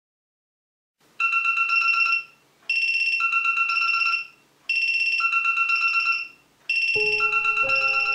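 Smartphone ringtone in a marimba-like tone, one quick trilling phrase played four times over with short gaps, starting about a second in. Piano music comes in near the end.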